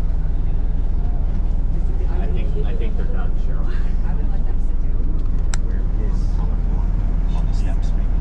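Steady low engine and road rumble of a bus, heard inside its crowded passenger cabin.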